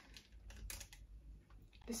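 Faint crinkling and a few light crackles of a plastic cake-mix bag being handled.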